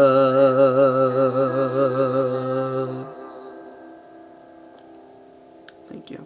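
A man's singing voice holds a long final note with vibrato, over a steady lower note. Both stop about three seconds in, leaving a faint ringing tail, and there is a small click near the end.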